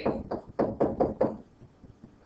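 A stylus tapping and clicking against a tablet's writing surface while handwriting, about eight quick strokes in just over a second, then stopping.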